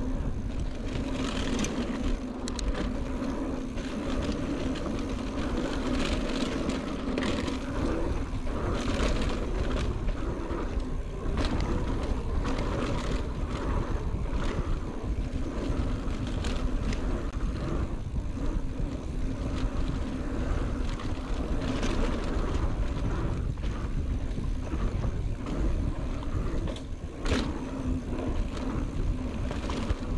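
Mountain bike riding fast along a dirt singletrack: a steady rush of wind over the camera microphone, with tyre noise and frequent short rattles and knocks from the bike over bumps.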